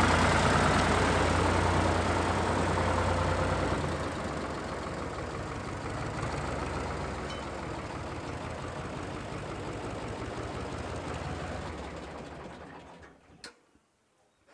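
Farm tractor with a front loader driving past, its engine running steadily. It is loudest for the first few seconds, then grows quieter as it moves away, fading out near the end.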